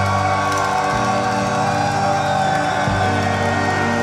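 Hardcore/metal band playing live: loud, steady sustained guitar and keyboard chords that change about a second in and again near three seconds in.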